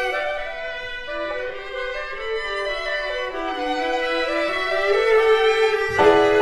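Contemporary classical chamber music for a small ensemble of clarinet, piano and strings: a slow, sustained bowed-string line with vibrato moving from note to note in steps, growing louder near the end.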